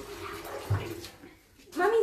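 Water running from a kitchen tap, dying away about a second in, with a short dull thump partway through.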